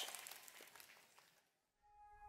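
Near silence: a faint echo fades out in the first second, then nothing until music begins right at the end.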